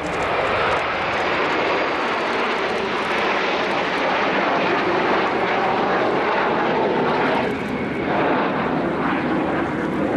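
Jet engine noise from a formation of Aermacchi MB-339 jet trainers flying past overhead: a loud, steady sound that swells sharply at the start and holds, dipping briefly about seven and a half seconds in.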